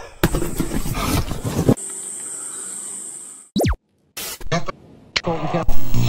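Edited intro sound effects: a burst of noise, then a steady high hiss, a quick falling pitch sweep, and short glitchy clicks and tones, each one cut off sharply.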